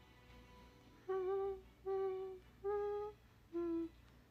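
A woman humming four short notes, the last one lower, over faint background music.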